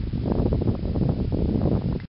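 Wind buffeting the camera microphone: a dense, gusting low rumble that strengthens about a quarter second in.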